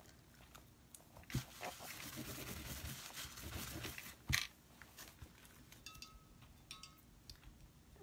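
Quiet handling noises as craft materials are moved on a plastic table cover: a knock, a faint crinkling rustle for a couple of seconds, then a sharp click about four seconds in.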